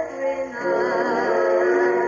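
A 1940s swing band record playing through a Wurlitzer jukebox, with a singer holding wavering, vibrato notes over the band.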